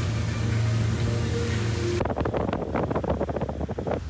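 Pontoon boat under way: a steady low engine hum under wind and water noise, with music playing. About halfway through, the noise turns rough and fluttering, like wind buffeting the microphone.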